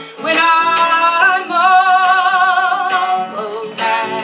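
A woman singing one long held note with vibrato, stepping up to a higher pitch about a second in, over a strummed acoustic guitar, with a strong strum near the end.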